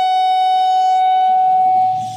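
Public-address microphone feedback: a loud, steady ringing tone held at one pitch with overtones above it, fading out at the very end.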